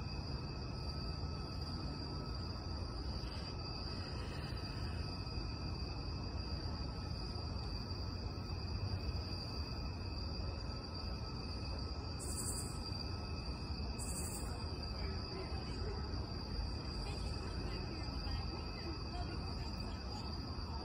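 A steady insect chorus: a continuous high-pitched trill that never stops, over a low, even rumble of background noise. Two brief high hissing bursts come about twelve and fourteen seconds in.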